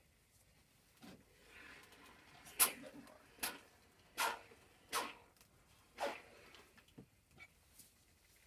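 Household iron worked over a cotton mask: five short, sharp sounds a little under a second apart, starting about two and a half seconds in, with faint fabric rustling just before them.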